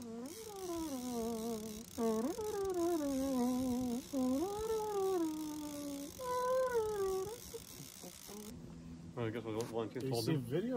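A man's voice singing or humming without words: four drawn-out phrases that each rise briefly and then slide down in pitch, some with a wavering vibrato, ending about three-quarters of the way through.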